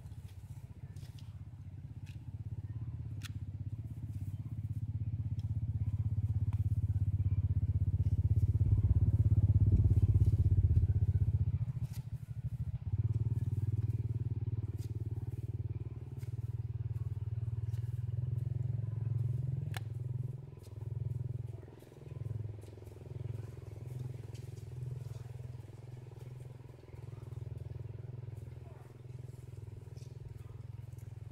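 An engine running steadily with a low hum. It grows louder to a peak about ten seconds in, then swells and fades several times in the second half.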